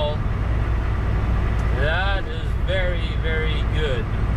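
Steady low rumble of a Volvo 780 semi-truck's Cummins ISX diesel engine and road noise, heard from inside the cab while cruising.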